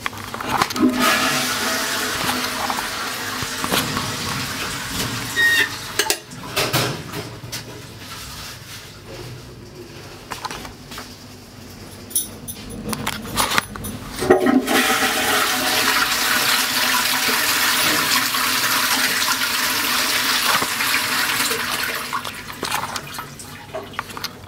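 Sensor-operated automatic-flush toilet flushing, water rushing into the bowl. The rush eases after about six seconds and comes back louder about halfway through, running on until near the end.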